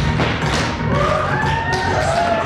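Tap shoes striking a wooden stage floor, several dancers in rhythm, over recorded music. About half a second in, a wavering high melody line comes in above the taps.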